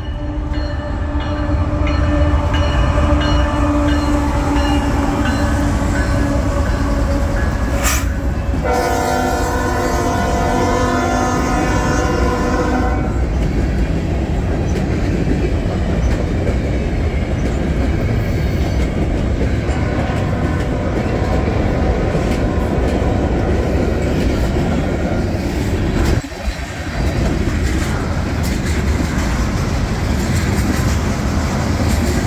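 A freight train passing close by. Its locomotive horn sounds a long blast of several notes at once, then after a brief break a second, shorter blast on a different chord. After that comes the steady rumble and clatter of hopper and tank cars rolling past.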